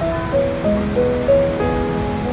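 Steady rush of water from a large waterfall, Niagara's Horseshoe Falls, with slow piano notes coming in a moment in and ringing on over it.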